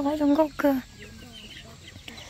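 Domestic chickens clucking faintly in the background, heard mostly in the quieter second half.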